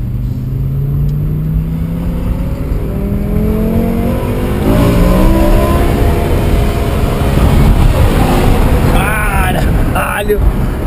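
A BMW M6's naturally aspirated V10 under hard acceleration, heard from inside the cabin. The revs climb steadily, dip at a gear change about four and a half seconds in, then climb again.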